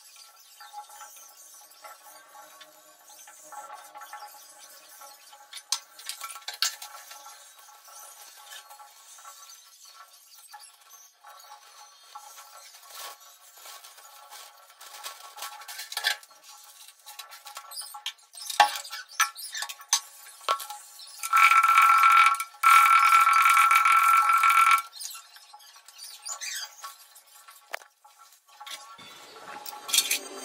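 Steel kitchen utensils clinking and clattering now and then. Past the middle comes the loudest sound, a steady tone lasting about three seconds with a short break.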